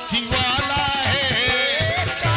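Live Indian devotional folk music (jawabi kirtan): a wavering melodic line over a hand drum keeping a steady beat, with the drumming growing stronger near the end.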